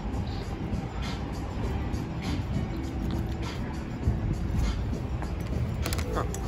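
Steady low rumble of city street traffic with background music over it, and a brief sharp click near the end.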